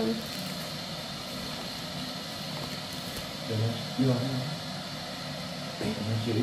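Steady background hum and hiss of a room, with a brief low murmur of an adult voice about three and a half seconds in.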